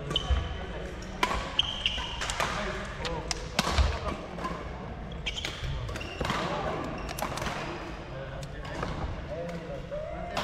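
Badminton rally: a string of sharp racket strikes on the shuttlecock about once a second, with brief high squeaks of shoes on the court floor between them.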